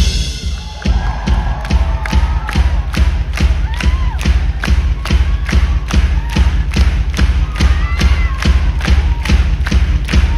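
Live rock-concert drums recorded on a phone: a fast, steady bass-drum beat of about three strokes a second, with a festival crowd cheering and whooping over it.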